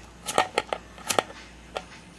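A lighter struck again and again at the mouth of a plastic soda bottle: about six sharp, short clicks spread over two seconds.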